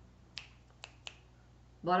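Three short, sharp finger clicks in the pause, the last two close together about a second in.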